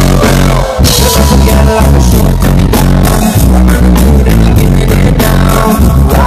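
Reggae band playing live, electric guitar, keyboard and drum kit in a loud, full mix with a heavy low end.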